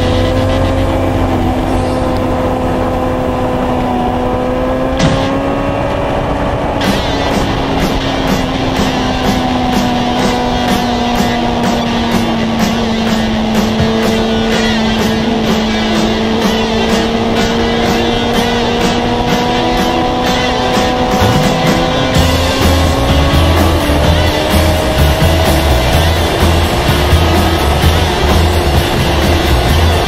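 Motorcycle engine running at a steady cruise, its pitch sagging slightly midway and climbing back, with wind noise on the microphone.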